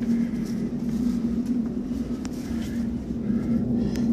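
A steady low mechanical hum with a constant droning tone, and a single faint click about halfway through.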